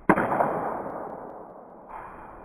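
A baseball bat strikes a ball once with a sharp, loud clang, followed by a ringing echo that fades over about a second and a half. A second, softer knock comes near the end.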